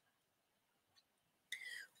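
Near silence, then a short, faint breath from the woman about one and a half seconds in.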